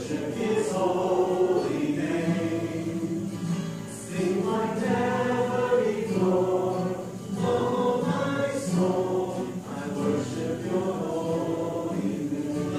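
Background music: a choir singing a gospel-style song in phrases of about three seconds each.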